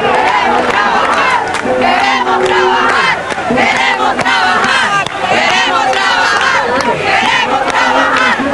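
A large crowd shouting, many voices at once, loud and sustained, dipping briefly about three and five seconds in.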